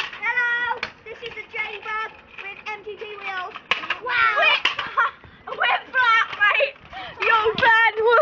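Young boys' voices talking, the words unclear.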